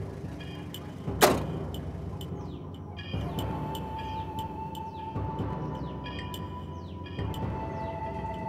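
A car door slams shut about a second in, over film background music with a held tone and a low pulse about every two seconds.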